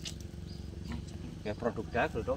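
Light crinkling of a plastic seed packet and a small clear plastic bag as seeds are shared out, with a man's voice briefly near the end.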